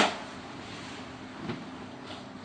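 A sharp slap of a book struck on a wooden lectern, dying away in the room at the start, followed by a faint knock about one and a half seconds in.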